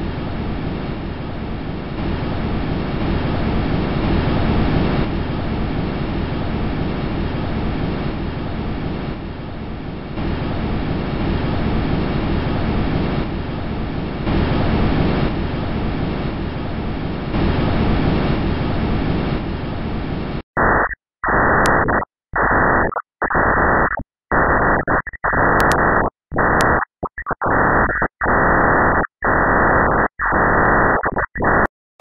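Sonified space-probe data. First, the audio of the Huygens probe's descent through Titan's atmosphere: a steady rushing noise, heaviest in the low end, with slow swells. About two-thirds through it cuts to Cassini's recording of Saturn's radio emissions, converted to sound: loud bursts of hiss that switch on and off irregularly.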